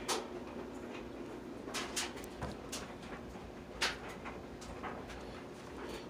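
Handling noise from a stereo power amplifier being turned over in the hands: a few faint, separate clicks and knocks from its case and controls over a low steady hum.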